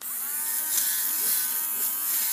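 Handheld fabric shaver switched on, its small motor spinning up in pitch and then running with a steady whine as it is pressed against a pillow cover to shave off pills.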